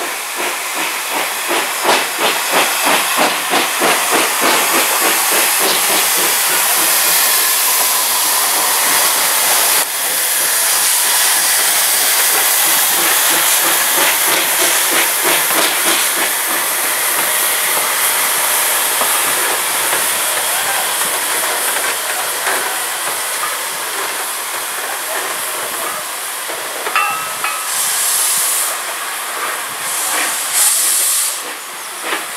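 Hudswell Clarke 0-6-0 saddle-tank steam locomotive working hard as it passes, its exhaust beating about four times a second over hissing steam. About ten seconds in the beats give way to a steady hiss of steam, and a brief high tone sounds near the end.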